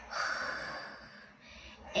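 A woman's breathy, unvoiced 'hhh' sound, strongest in the first half second and fading out by about a second in.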